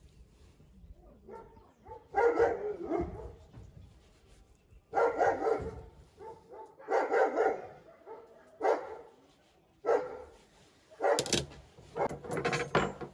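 A dog barking repeatedly, about six short barks or bark pairs spaced a second or two apart.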